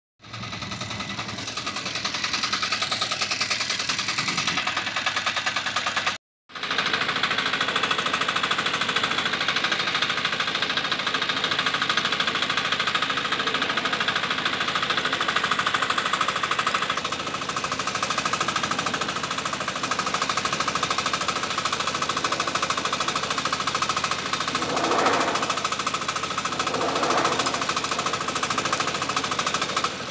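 Motocultor (two-wheel walking tractor) engine running steadily while pulling a loaded trailer, a fast even chugging. The sound drops out briefly about six seconds in, and there are two short louder surges near the end.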